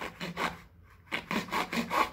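A knife blade sawing back and forth through a thin cardboard box: a quick run of short scraping strokes, with a brief pause partway through.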